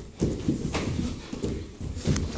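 Bare feet thudding on the training-hall floor in a quick, irregular run of steps during taekwondo drills, with a sharper smack a little under a second in.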